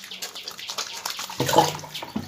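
Water sloshing and splashing in a plastic bucket as a hand dips into it, uneven throughout and loudest about a second and a half in.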